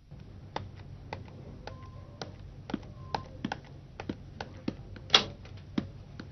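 Irregular clicking of typing on a computer keyboard, several keystrokes a second with uneven gaps. Two brief faint tones sound about two and three seconds in, and one click near the end stands out louder.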